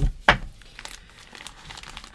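A clear plastic packaging bag crinkling and rustling as a sheet of card stock is slid back into it, with one sharp tap about a third of a second in.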